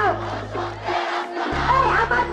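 A group of voices singing together over musical accompaniment, with sustained low bass notes that change pitch abruptly.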